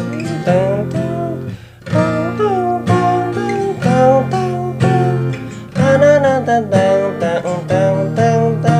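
Steel-string acoustic guitar with a capo on the first fret, strummed through the intro chord shapes A, E, F#m and D at about one strum a second, with a man's voice singing the melody over it.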